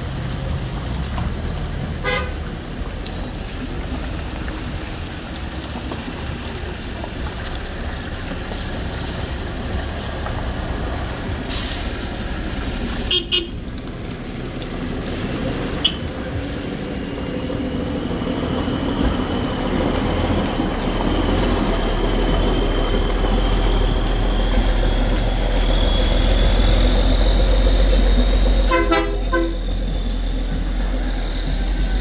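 Slow traffic on a flooded, potholed gravel road: car engines running at low speed with tyres through water and gravel, and a few short car-horn toots. A nearby vehicle's low rumble grows louder in the second half.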